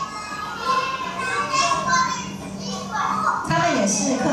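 Children's voices from a classroom video played back over loudspeakers: a group of kids talking.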